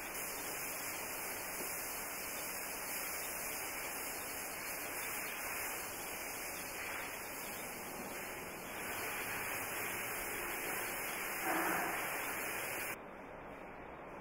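Steady background hiss with no clear source. A brief louder sound comes about eleven and a half seconds in, and the hiss drops suddenly to a quieter level about a second before the end.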